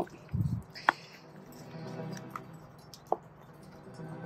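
Soft background music, with light handling noises from a silicone mold being flipped inside out: a soft thump early on and two short clicks, about a second in and near three seconds.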